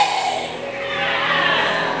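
Congregation laughing together, a dense wash of many voices that swells up about half a second in, just after a shouted line from the preacher.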